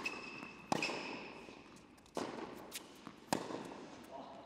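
A tennis rally: four sharp pops of the ball off racquet strings and hard court, roughly a second apart, each echoing in a large indoor hall. Short high shoe squeaks on the court come near the start.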